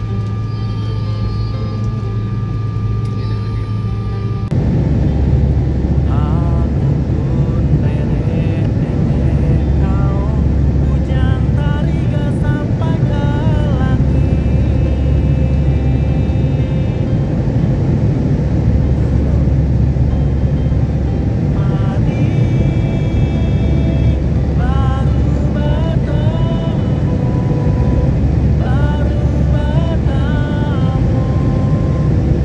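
Steady low rumble of an airliner's jet engines heard inside the cabin, stepping up about four and a half seconds in. Background music with a melody plays over it.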